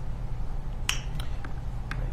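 Courtroom room tone: a steady low hum, with a few sharp clicks about a second in and just before the end.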